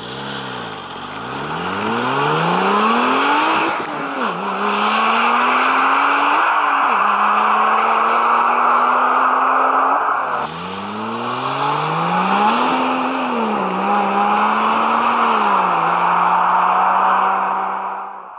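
Porsche 996 Turbo's 3.6-litre twin-turbo flat-six accelerating hard away from the camera, its pitch climbing and falling back at each upshift, twice, then holding steady at speed. After a cut about ten seconds in, a second 996 Turbo pulls away the same way, with two more upshifts.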